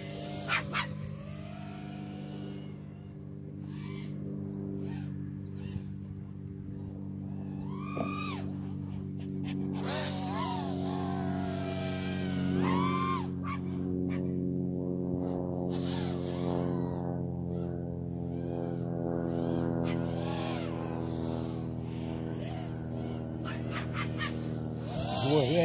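A quadcopter drone's propellers humming in several steady tones, louder from about ten seconds in. A dog gives a few short, rising-and-falling whines over it.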